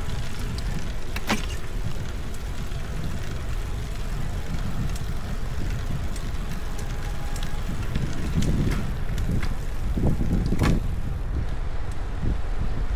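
Wind buffeting the camera's microphone on a road bike moving fast downhill, a steady low rushing that swells a little near the end, with a couple of sharp clicks.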